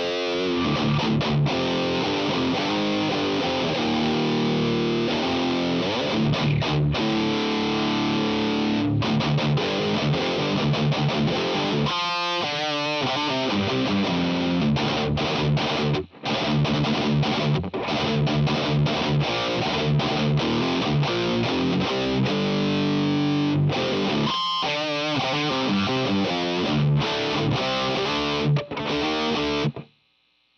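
Electric guitar played through a Revv G3 distortion pedal into a Dumble-style clean amp sim (ML Sound Lab Humble), giving heavily distorted, way darker riffs and chords. The playing breaks off briefly about halfway through and stops suddenly at the end.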